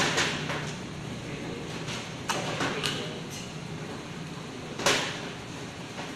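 Cables being unplugged from a projector's rear ports and handled on a metal table: a few sharp clicks and knocks, the loudest about five seconds in.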